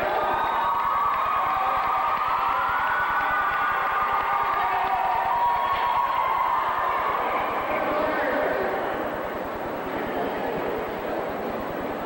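Many voices cheering and calling out together, a steady din that eases off about eight seconds in.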